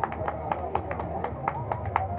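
Spectators clapping a steady beat, about four claps a second, cheering the lead runner in to the finish, with crowd voices underneath.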